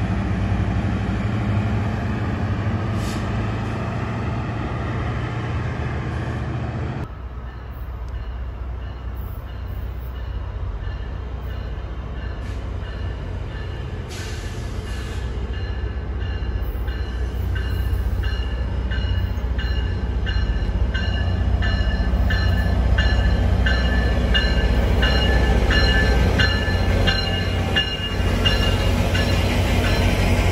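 GO Transit diesel locomotive working under a plume of exhaust, a steady low engine drone. After an abrupt break about seven seconds in, a GO train of bilevel coaches comes into the platform, growing louder as it rolls past close by, with a high ringing that repeats about twice a second.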